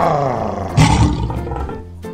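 A loud, growling roar for a meat-eating animal. It starts as a pitched growl, turns harsh and breathy about a second in, then fades.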